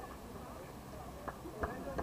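Voices talking in the background, then from about a second in a run of sharp hand claps, roughly three a second.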